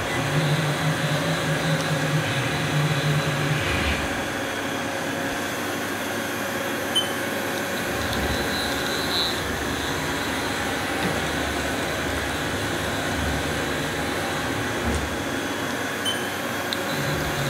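Steady mechanical hum with several steady tones from a powered-up Haas VF2 vertical machining center that is not cutting; the lower part of the hum eases off about four seconds in.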